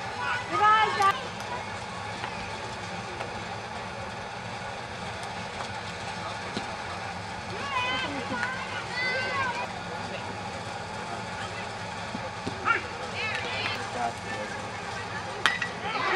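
Faint voices of spectators calling out over steady outdoor background noise. Near the end there is one sharp crack of a bat hitting the ball.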